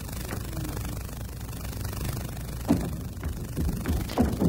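Steady low rumble of a table tennis hall's background noise between rallies, with one sharp knock about three-quarters of the way through and a few short sounds near the end.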